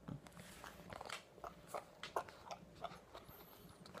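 Faint handling noise: a scattered string of soft clicks and rustles, a few a second, from hands moving on the phone and jacket.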